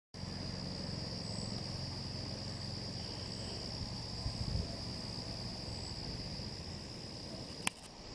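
Steady, high-pitched chorus of meadow insects trilling without a break, over a low rumble, with a single sharp click near the end.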